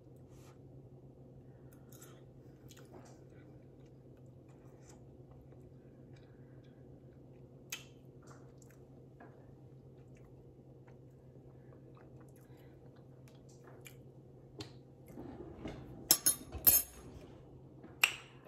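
Quiet chewing of food over a steady low hum, with faint small clicks scattered through. About three seconds before the end come a few loud clattering strikes of cookware.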